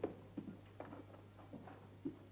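Five or six faint, soft knocks, about two or three a second, over a steady low hum.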